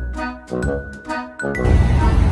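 Short tinkling jingle sound effect: two chimed phrases about half a second apart, ending about a second and a half in.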